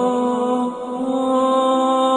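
A cappella nasheed: a sung voice with no instruments holds one long steady note, breaks off briefly under a second in, then takes the note up again at about the same pitch.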